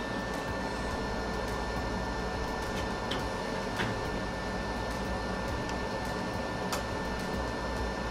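Steady fan or blower noise from workbench equipment, with a faint constant high tone, and a few light ticks from the soldering work about three, four and seven seconds in.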